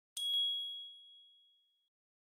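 Video logo sting: a single bright, high ding that rings out and fades away over about a second and a half.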